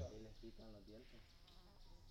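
Near silence with a faint, steady, high-pitched insect drone.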